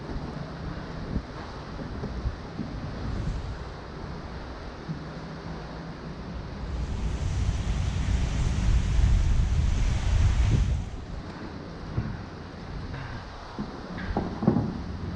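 Wind buffeting the microphone over choppy water slapping around the kayak. A stronger gust swells about seven seconds in and drops off sharply near eleven seconds.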